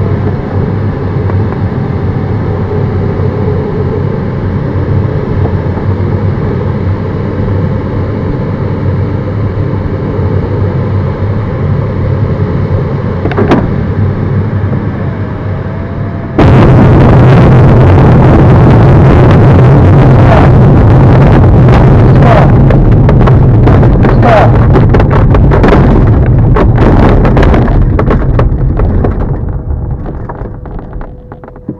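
Air rushing past an LS4 glider's cockpit on final approach. About halfway through, the glider's main wheel touches down on grass: the sound jumps suddenly to a loud rumble full of bumps and knocks as it rolls out over the field, fading as it slows to a stop near the end.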